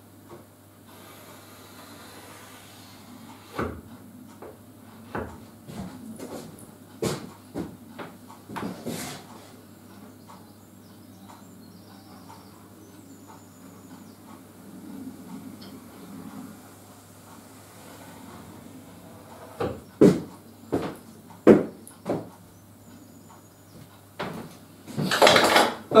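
Pencil, tape measure and straightedge handled on a sheet of plywood while a cutting layout is marked out: scattered light knocks and taps, with a low steady hum underneath.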